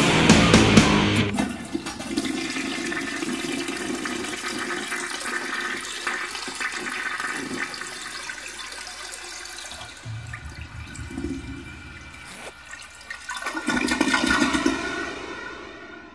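A thrash metal band's full mix cuts off about a second in. A sustained rushing noise with faint ringing tones follows, swells again near the end and then fades out as the track ends.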